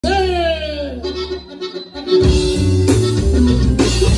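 Live norteño-style band with accordion, electric bass and drums: a note sliding down opens, there is a short lull, then the full band comes in loudly about two seconds in.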